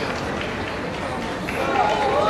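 Background chatter of many voices in a large, echoing sports hall, with a couple of short, sharp snaps.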